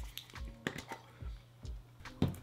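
Small round dip tins handled and set down on a wooden table: several light clicks and taps spread over the two seconds.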